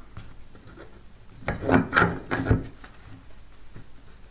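Wooden board being slid down over threaded steel carriage bolts and set onto a stack of cardboard, with a quick run of knocks and scrapes about halfway through as it settles, the last knock the loudest.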